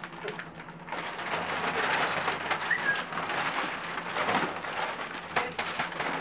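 Wrapping paper crinkling and tearing: a dense rustle with scattered crackles that thickens about a second in.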